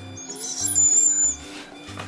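A dog whining: one high-pitched whine starting about half a second in and lasting almost a second, heard over background music.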